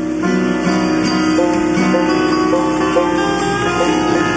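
Live acoustic bluegrass band playing an instrumental passage: plucked strings from guitar and mandolin over an upright bass, with notes changing every half second or so.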